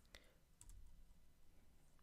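A few faint computer keyboard keystrokes clicking over near silence: one sharp click at the start, then a few softer ones within the first second.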